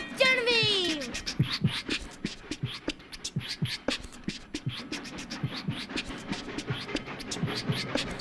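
Beatboxing: mouth-made drum beats, low kicks and crisp hi-hat and snare sounds in a steady run of a few a second. It opens on a voice sliding down in pitch.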